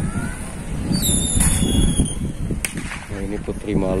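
A brief high-pitched squeal, a thin, slightly falling whistle-like tone lasting about a second, starts about a second in over steady low background noise. A man's voice follows near the end.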